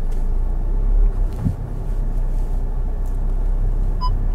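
SEAT Tarraco heard from inside the cabin, creeping forward at idle during a park-assisted manoeuvre: a steady, low rumble.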